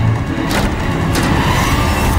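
A wooden double door being opened by its lever handle: two sharp clicks about half a second apart, then a gliding creak. Dramatic background music plays underneath.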